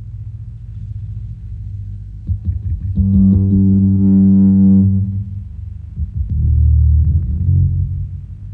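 Instrumental rock intro: a low distorted drone, then one long held guitar note from about three seconds in, with heavy bass notes near the end.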